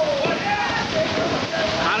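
Studio wrestling crowd noise, a steady roar with voices shouting over it, during a near-fall pin count.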